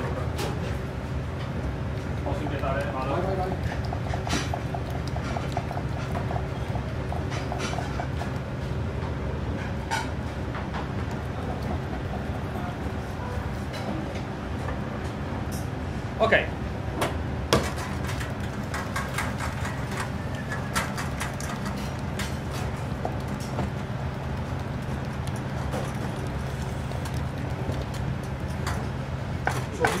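Commercial kitchen sounds: a steady low hum under scattered clicks and knocks of a wooden spoon and pans as risotto is stirred in an aluminium saucepan, with two louder knocks a little past halfway and faint voices in the background.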